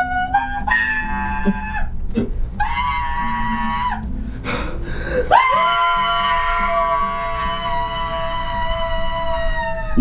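A man singing loudly in long held notes: two sustained notes with short breaks between them, then a note that slides up about five seconds in and is held for over four seconds.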